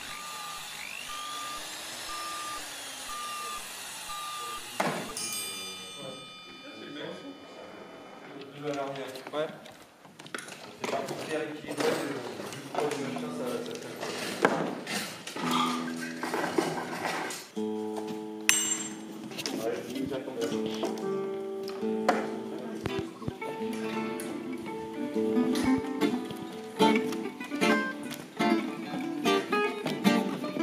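Acoustic swing-manouche string band, guitars and violin, playing from about halfway in, with voices talking between and over it. It opens with a repeated high beep and sweeping tones that end in a sharp hit about five seconds in.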